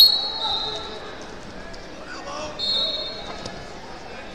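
Referee's whistle blown to start the wrestling bout: a loud blast right at the start that trails off over about a second, then a second, shorter whistle about two and a half seconds in, over spectators talking in a large hall.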